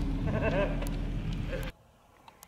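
Steady low rumble of a moving vehicle, with a short wavering voice sound, a laugh or drawn-out word, in the first second. The sound cuts off abruptly near the end, leaving near silence.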